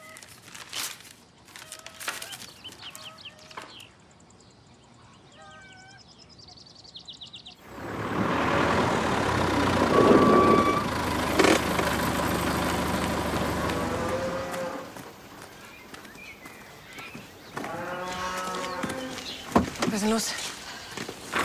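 A farm tractor engine runs loud close by for several seconds, starting suddenly about seven and a half seconds in and then falling away, and a cow moos near the end.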